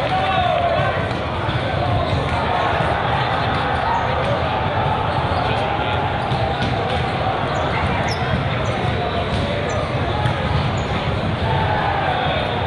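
Volleyballs bouncing and being struck on the sport courts of a large, echoing hall, over a steady babble of many voices. A few short high squeaks come in the second half.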